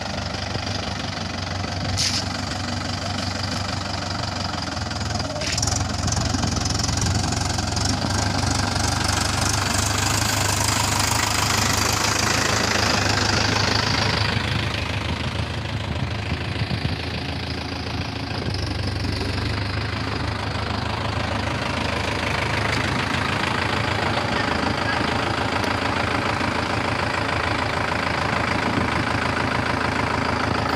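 Mahindra diesel tractor engines running steadily, with two sharp clicks in the first few seconds. The engine sound grows louder about six seconds in, and its high hiss drops away around fourteen seconds.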